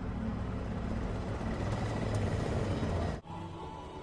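Film soundtrack: a low, steady rumble under a noisy wash that swells toward the middle. It is cut off abruptly by an edit just after three seconds in, and quiet sustained music tones follow.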